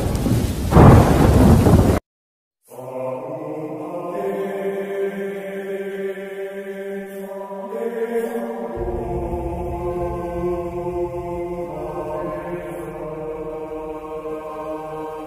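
A loud crash of thunder rumbling, swelling about a second in and cut off abruptly at two seconds. After a short silence, slow music of long held chords begins and carries on, with the chord changing a few times.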